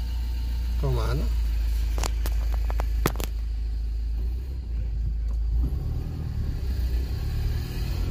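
Low, steady rumble of a car driving slowly, heard from inside the cabin, with a few sharp clicks about two to three seconds in.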